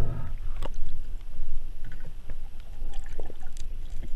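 Underwater noise as picked up by a camera in a waterproof housing while the diver hauls in a speared fish: a steady low rush of water moving against the housing, with a few sharp clicks and knocks, one about half a second in and another near the end.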